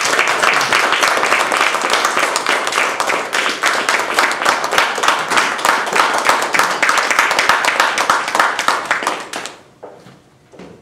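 Audience applauding: many hands clapping at once in a dense, steady patter that dies away near the end.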